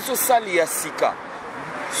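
A man talking, with the steady noise of a passing road vehicle filling the second half.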